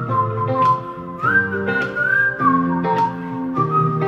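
A man whistling a melody into a handheld microphone over an instrumental backing track with a steady beat. The whistle holds clear single notes, stepping up to a higher note about a second in and back down past the middle.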